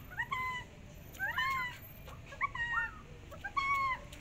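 Cat meowing: short high calls, each rising then falling, in four bouts, with a pair overlapping in the second bout.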